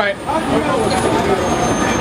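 Street traffic noise: a steady rumble of passing road vehicles with faint voices underneath and a thin high whine.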